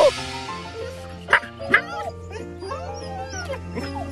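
Siberian husky giving several short, arched whines and yips, excited at being put on the leash, over steady background music.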